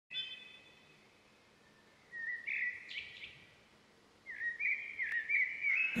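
Faint bird chirping: one short call near the start, a few quick chirps at about two seconds in, then a run of repeated chirping phrases from about four seconds in that grows louder toward the end.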